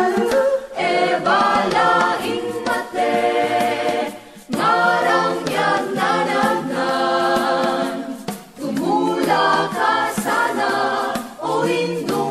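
Background music: a choir singing, with short breaks between phrases about four seconds in and again past eight seconds.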